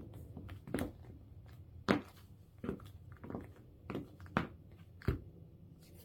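High-heeled cork platform sandals stepping on a wooden floor: a sharp heel click with each step, about seven in all, unevenly spaced at a slow walking pace.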